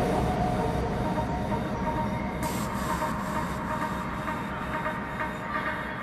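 A breakdown in a techno mix: a dense, train-like low rumble with hiss, slowly getting quieter; the high hiss drops away about two and a half seconds in.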